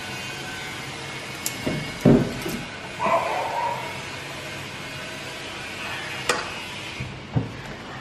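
Hand mixing cauliflower florets with flour and spice powder in a bowl: soft handling with a few knocks, the loudest about two seconds in, over a steady low hum.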